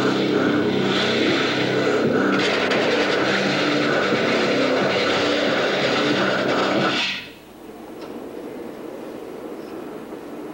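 Ski-jump skis rushing down the in-run track in a film soundtrack played through theatre speakers: a loud, steady hiss over a low hum. It cuts off suddenly about seven seconds in as the jumper leaves the ramp, and a much quieter background follows.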